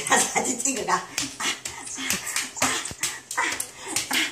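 A baby's excited squeals and babbling mixed with a woman's voice, with sharp slaps of palms on a tiled floor as they crawl quickly.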